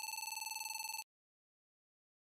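Electronic square-wave buzz sound effect, a steady buzzing tone that stops abruptly about a second in.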